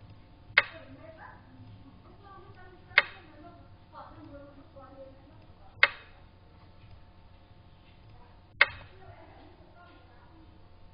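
Four sharp, wooden-sounding clicks, about two and a half to three seconds apart: the piece-placing sound of a xiangqi (Chinese chess) program as moves are played on the board.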